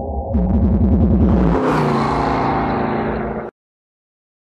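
A short synthesized music and sound-effect sting for an animated logo, building up and cutting off suddenly about three and a half seconds in.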